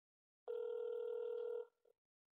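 Telephone ringback tone heard through a phone's speakerphone while the call connects: one steady tone a little over a second long, starting about half a second in.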